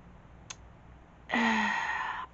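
A woman's sigh of exasperation: a breathy, lightly voiced exhale lasting about a second, starting a little over a second in. A faint click comes before it.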